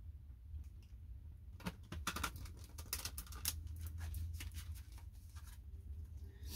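A deck of tarot cards being shuffled by hand: a quick run of papery clicks and slaps that starts about a second and a half in and stops shortly before the end.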